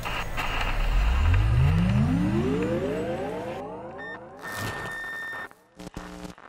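Electronic TV-static and glitch sound effect: a low hum rises steadily in pitch for about three seconds, then cuts into a burst of static carrying a steady high tone, followed by short stuttering buzzes near the end.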